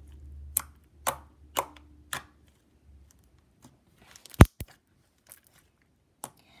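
Slime being kneaded and pressed with the fingers on a tabletop, giving sharp pops about twice a second as trapped air bursts. About four seconds in comes one much louder pop, followed by a smaller one.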